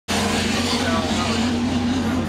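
A steady engine drone, a low hum with a slightly wavering pitch over a constant noise bed, with faint voices.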